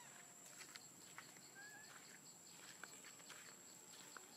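Near silence: faint outdoor ambience with a steady high whine, a few soft crackles and ticks from dry leaf litter, and one short chirp about one and a half seconds in.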